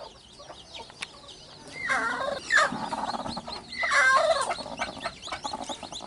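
Broody hen making two drawn-out clucking calls, about two and four seconds in, as her nest is uncovered and a hand reaches in to her. Under them runs a constant high-pitched peeping of newly hatched chicks.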